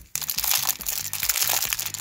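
Clear plastic packaging crinkling as it is handled. It starts suddenly just after a brief quiet moment, with background music underneath.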